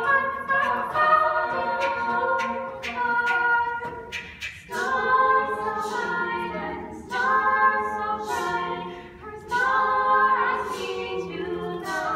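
An a cappella vocal group singing in layered harmony, with no instruments, in phrases separated by brief breaks.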